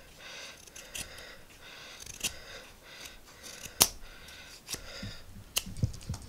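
Ganzo G7392-CF folding knife blade shaving and hogging chips off a green wood branch: a run of short scraping strokes with a few sharp clicks, the loudest about four seconds in.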